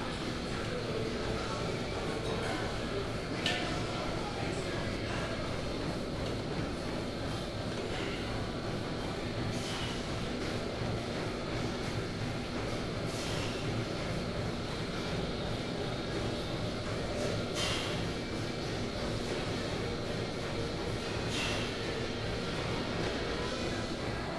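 Steady din of a busy gym: background music and distant voices, with a few sharp knocks spread a few seconds apart.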